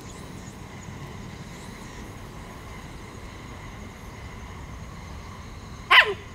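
Steady outdoor background with faint insects trilling on steady high notes; right at the end, a dog gives one loud, short bark that drops in pitch.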